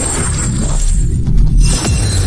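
Loud logo-intro music with deep bass, with sharp crash-like hits from about a second in.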